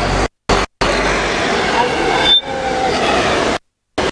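Outdoor street background noise with indistinct voices, cut off abruptly into silence several times and ending a little before the end.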